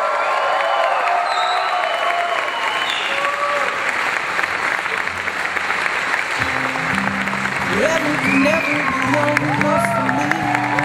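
Wedding guests applauding and cheering with whoops for the newly pronounced couple. Music comes in about six and a half seconds in, a low bass line stepping between notes under the continuing applause.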